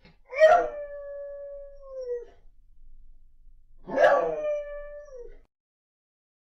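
A dog howling twice. Each howl starts sharply, holds one steady pitch for about a second and a half, then falls away at the end.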